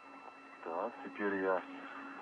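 A voice heard over the radio link, briefly, about half a second in, over a steady electronic hum.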